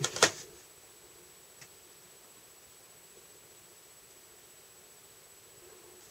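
Quiet room tone: a faint steady hiss, with a single soft click about a second and a half in.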